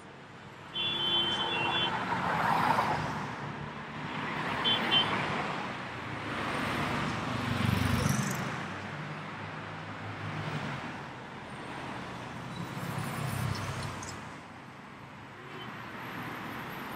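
Slow rush-hour city traffic, with car and scooter engines and tyres passing close by. A car horn sounds for about a second near the start, and there is a second short toot about five seconds in.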